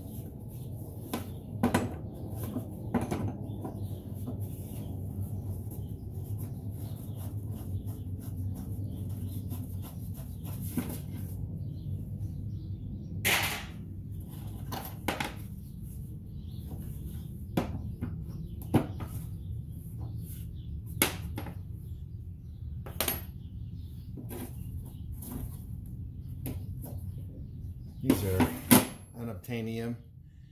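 A 22 mm combination wrench clicking and knocking against a windscreen-wiper spindle nut as the nut is worked loose, a few sharp clicks at a time, over a steady low hum. A louder clatter comes near the end.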